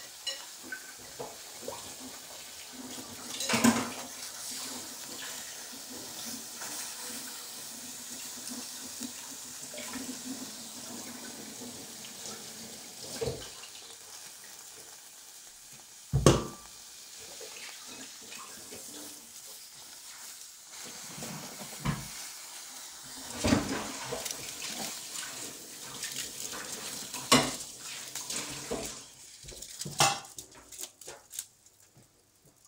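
Field mushrooms sizzling on aluminium foil on a hot ceramic hob, a steady hiss, broken by a few sharp clatters, the loudest about sixteen seconds in.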